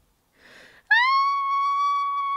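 A short breathy gasp, then, about a second in, a long high-pitched vocal squeal that slides up briefly and then holds one steady pitch. It is the reader's voice acting a mother straining to push in childbirth.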